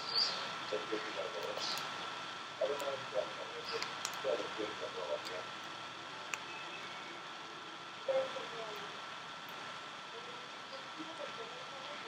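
Quiet, wordless murmurs from a young child's voice in short snatches, over a faint steady high-pitched tone.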